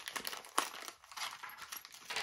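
Small clear plastic bag crinkling and rustling in the hands as it is opened, in an irregular run of light crackles.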